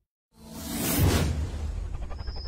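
A whoosh sound effect for an animated title graphic. It swells up from silence about a third of a second in, peaks about a second in with a deep low end under it, and fades into music.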